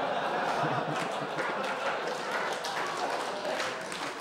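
Comedy club audience laughing and clapping after a punchline, dying down toward the end.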